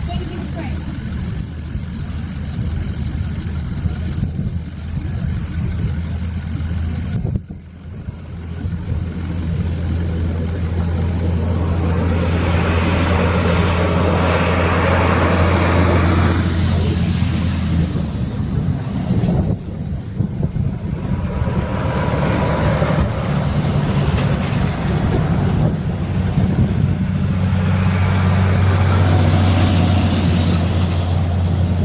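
Heavy-haulage trucks pulling low-loader trailers laden with mining dump trucks drive past one after another, their diesel engines running steadily. The sound swells as the nearest rigs pass, loudest from about twelve to eighteen seconds in and again near the end, with a high whine that slides down and stops as the first big load goes by.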